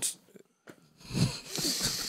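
A short silence, then breathy laughter from one or more men starting about a second in.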